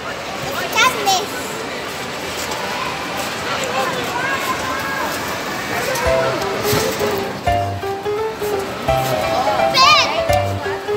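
Busy babble of children's voices and shouts, with background music with a bass beat coming in about six seconds in.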